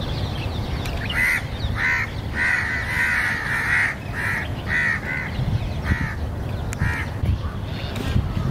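A bird calling in a series of short calls, about eight in all, starting about a second in; one near the middle is drawn out for about a second and a half. A steady low background noise runs beneath.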